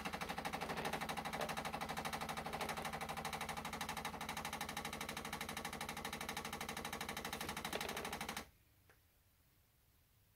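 Bosch Tassimo Vivy 2 pod coffee machine running its brew cycle on an espresso T-disc: its water pump gives a rapid, even pulsing buzz that cuts off suddenly about eight and a half seconds in.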